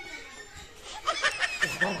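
A person laughing in short, quick bursts, starting about a second in after a quieter stretch.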